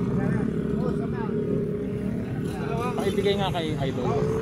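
Motorcycle engine idling steadily, with several people talking over it.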